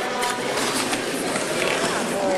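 Crowd of spectators talking in a gymnasium: a steady murmur of many voices with no one voice standing out.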